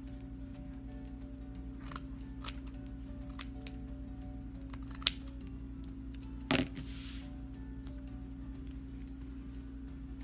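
Scissors snipping through folded fabric in a series of short, irregular cuts, loudest about five and six and a half seconds in, over steady background music.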